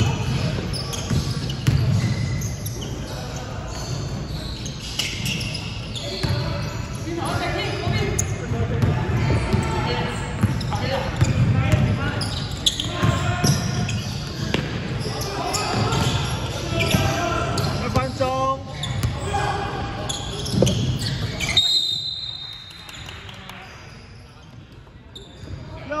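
Basketball game in a large gym hall: voices calling out over the ball bouncing and knocking on the hardwood court. Near the end a brief high referee's whistle sounds and play stops, leaving a quieter stretch.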